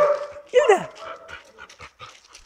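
Dog whining: a thin, steady whine with a short falling whimper about half a second in, the excited greeting sound of a dog being petted.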